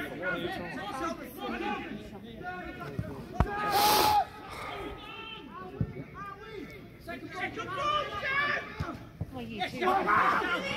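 Scattered voices of players and spectators calling and chattering around a football pitch, with one brief loud burst of sound about four seconds in.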